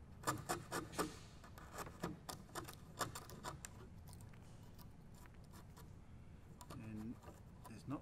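Wood chisel cutting into timber by hand, a quick irregular run of sharp taps and cracks over the first few seconds as the chisel is driven and chips break away, then fainter, sparser scraping as it pares the hinge recess clean.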